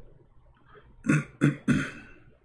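A man clearing his throat: three short, harsh coughs in quick succession about a second in. His throat is dry.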